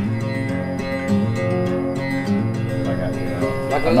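Acoustic guitar being strummed, chords ringing steadily; a man's voice starts speaking near the end.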